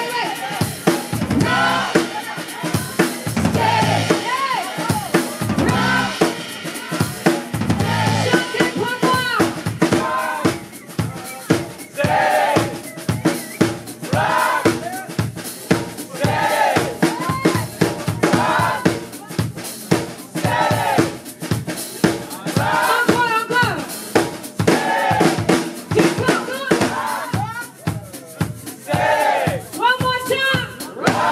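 A live band is playing a song: a drum kit keeping a steady beat with bass drum and snare, electric guitar, bass guitar and keyboard, with a woman singing over it.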